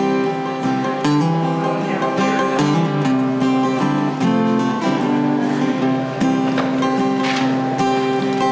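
Acoustic guitar strummed steadily in an instrumental passage of a ballad, with no singing.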